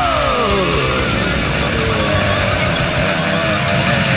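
Heavily distorted electric guitar, a Fender Stratocaster through a Tube Screamer and a solid-state Marshall combo. A noisy, held chord with a note sliding down in pitch during the first second, over a steady bass, with no drums.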